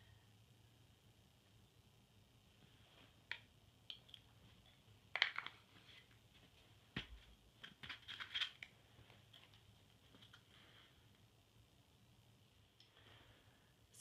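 Near silence with faint room tone, broken by a few short, faint scrapes and clicks of a small metal palette knife spreading leather filler compound over leather, the sharpest click about halfway through.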